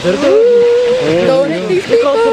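A person's voice holding one long wordless cry, level at first and wavering near the end, over a faint steady hiss of noise.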